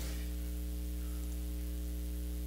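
Steady electrical mains hum with a light hiss.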